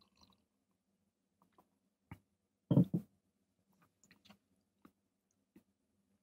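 A person sipping beer and swallowing, with small lip and tongue smacks as he tastes it. A louder short mouth sound comes about three seconds in.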